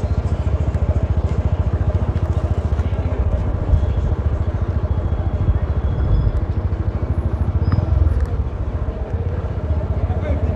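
Small motorcycle engine running steadily with wind rushing over the microphone as it rides along the road.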